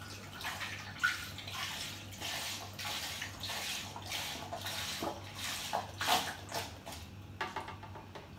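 Apple juice poured from a carton through a funnel into a demijohn, running and splashing unevenly as it fills the jar.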